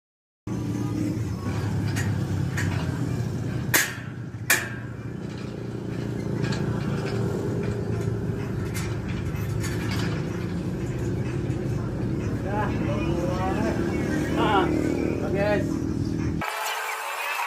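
A steady low engine-like hum runs throughout. Sharp metal clinks sound between about 2 and 4.5 s, the two loudest close together, as stainless-steel frame pieces are handled. Faint voices come in near the end.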